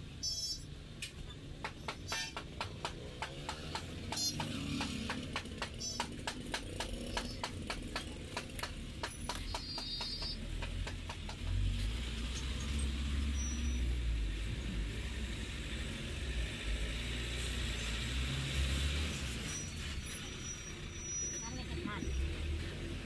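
Quick sharp taps and clicks, about three or four a second, from a metal bench scraper scoring dough on a flour-covered table, during the first half. From about halfway, a low rumble like passing traffic takes over, with voices in the background.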